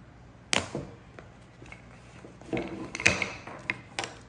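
A patterned paper blind bag torn open with one sharp rip about half a second in, followed by paper rustling and a few light clicks as wooden play-food pieces are tipped out onto a wooden table.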